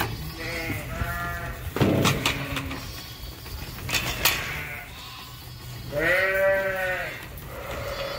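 Sheep bleating: a few short bleats in the first second and a half, and one longer bleat about six seconds in. A couple of sharp knocks fall between them.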